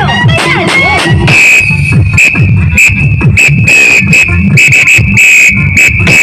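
Loud dance music with heavy, pulsing bass played through a large stacked street sound system. A high, steady whistle-like tone sits over the music from about a second in, breaking off briefly now and then. Sliding pitch sweeps come at the start.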